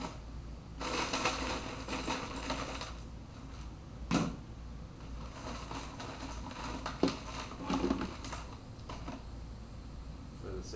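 Handling noise: about two seconds of rattling and crinkling, a single knock about four seconds in, then a few clicks and short scrapes.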